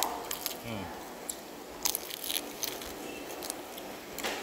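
Close-up chewing of a mouthful of fried pork wonton: scattered short crunchy clicks and wet mouth sounds, with a brief hummed 'hmm' about a second in.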